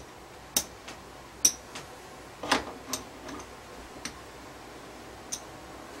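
Casino-style chips clicking against one another and on the felt of a craps layout as a stack is split and the chips are set down on the place-bet numbers: a series of short, sharp, irregular clicks.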